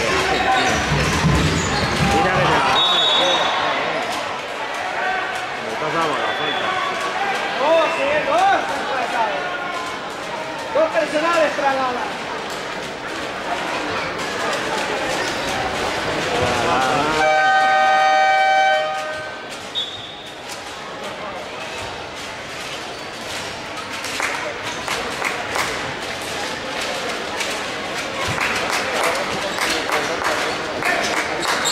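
Basketball game in a gym: a ball bounces on the hardwood court under a steady background of crowd and player voices. A short referee whistle blast comes about three seconds in and another near two-thirds of the way through. Just before that second whistle, the arena's electronic game horn sounds one steady tone for about two seconds.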